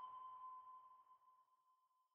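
A faint single ringing ping, one clear tone with a fainter higher overtone, struck just before and fading away over about two and a half seconds.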